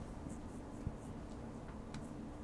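Quiet room tone in a lecture hall: a steady low hum with a few faint clicks and small scratching sounds, and one soft thump a little under a second in.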